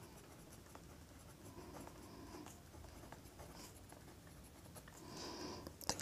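Ballpoint pen writing on paper: faint scratching as numbers and letters are written out.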